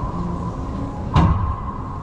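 One sharp smack of a racquetball, about halfway through, ringing briefly off the walls of the enclosed court, over a steady low hum.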